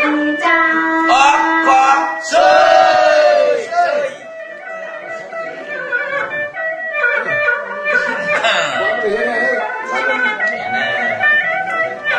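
Tai Lue khap folk singing with plucked-string accompaniment: a voice sliding between pitches in long, ornamented phrases. It is loudest in the first few seconds and quieter from about four seconds in.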